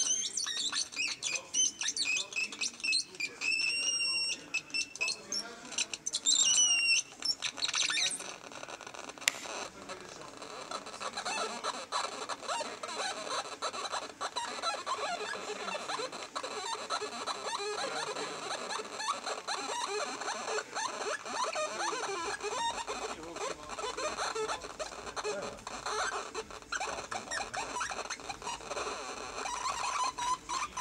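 Low-tech tactile synthesizer played by hand, giving chirping electronic tones that glide up and down in pitch. For the first eight seconds or so they are high and warbling, then they turn into a busier, jittery chatter lower in pitch.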